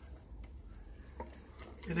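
Wooden spoon stirring softened onions, chillies and garlic in a stainless steel stockpot, quiet, with a couple of faint knocks of the spoon against the pot over a low steady hum.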